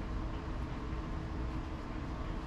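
Steady low hum and hiss of room background noise with a faint constant tone, unchanging and without distinct events.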